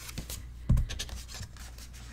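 A paper card sliding out of a paper envelope, with rustling and rubbing of paper, and a soft low thump about three quarters of a second in as the album is handled.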